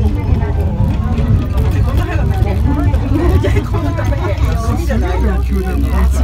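Continuous talking over a steady low rumble inside a moving ropeway gondola cabin.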